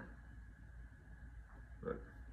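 Quiet room tone with a steady low hum, and one short sound from a man's voice near the end.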